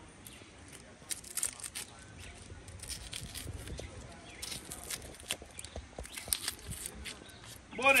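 A chef's knife peeling and cutting a red onion held in the hand: irregular short crisp scrapes and crackles of the blade against the papery skin and flesh.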